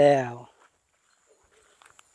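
A man's spoken word ending about half a second in, then near silence with a faint steady high tone and a few faint clicks near the end.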